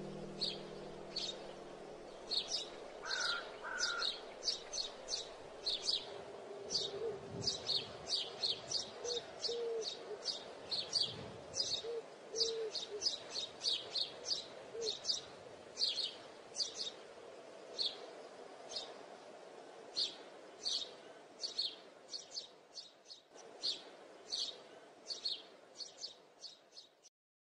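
Small birds chirping, short high chirps about twice a second over a steady faint background, with a few short low notes in the middle. A guitar chord rings out and fades in the first two seconds.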